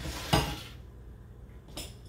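Kitchen clatter of cookware and utensils handled on a counter: a sharp knock with a short ring about a third of a second in, then a lighter knock near the end.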